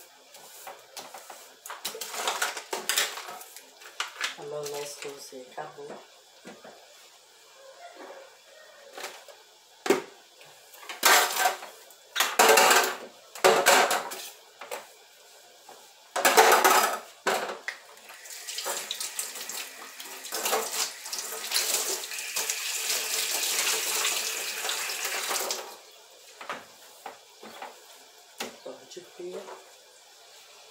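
Washing up in a stainless steel sink: water splashing and dishes clattering, in short bursts. For several seconds about two-thirds of the way through, the tap runs steadily, then it is shut off suddenly.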